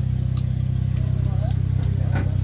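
A small truck's engine idling: a steady, even low hum.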